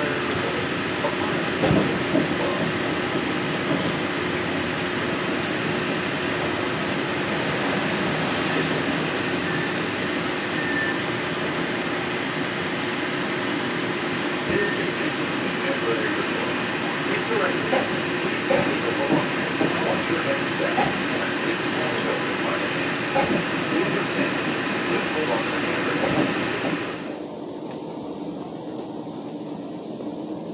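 Walt Disney World Mark VI monorail heard from inside the car: a steady rumble and hiss of the train running on its concrete beam into the station. About 27 s in, the sound drops abruptly to a quieter, duller hum.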